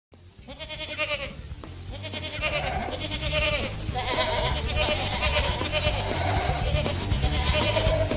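Intro music: a quavering, high pitched cry repeated in about four phrases over a steady low bass line, growing louder after the first few seconds.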